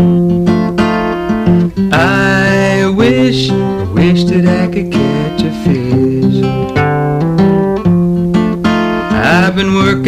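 Country-style song with acoustic guitar strummed in a steady rhythm, and a melody line that bends in pitch about two seconds in and again near the end.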